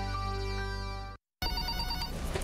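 Music cuts off just after a second in. After a short silence, an electronic telephone starts ringing with a quick, pulsed trill.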